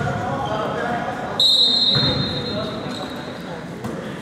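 Spectators talking in a gymnasium while a basketball bounces on the hardwood. About a second and a half in, a shrill high tone starts suddenly, loud for about half a second, then fades away over the next two seconds.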